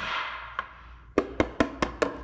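Knocks on a rigid silver-painted packaging box made of MDF-like hardboard rather than cardboard. A hit at the very start rings on and fades over about a second, then four quick knocks come about a fifth of a second apart.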